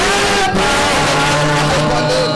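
Worship music: a man singing into a microphone over a sustained accompaniment, with long held notes.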